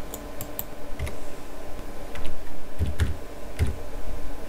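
Typing on a computer keyboard: irregular keystroke clicks, with a few heavier strokes in the second half.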